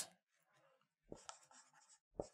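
Felt-tip marker writing on a whiteboard: a few faint, short strokes starting about a second in, after near silence.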